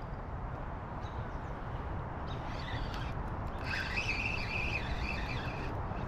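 Steady outdoor background hiss, with faint high bird chirping and warbling through the second half.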